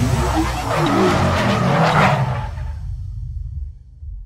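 Animated-logo intro sound effect: a low rumble with whooshing noise that builds to about two seconds in, then fades away.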